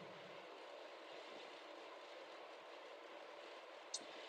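Near silence: a faint steady hiss, with a tiny click just before the end.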